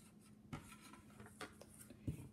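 A dry-erase marker writing two numerals on a small whiteboard: a few faint, short strokes, with a slightly sharper tap of the tip about half a second in.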